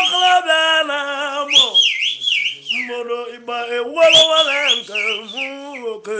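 A man singing in Igbo in long held notes with wavering vibrato, joined at times by high swooping whistles.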